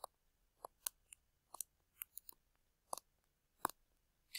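Faint, irregular clicking of a computer pointing device, about a dozen sharp clicks over four seconds, some in quick pairs like double-clicks, as an object on screen is selected and moved.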